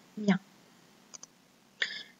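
One short spoken word, then two quick, faint clicks close together about a second in.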